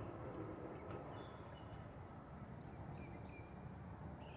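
Faint outdoor background noise with a steady low rumble and a few short, distant bird chirps.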